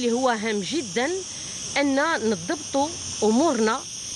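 A woman speaking in a continuous run of phrases, over a steady high-pitched hiss.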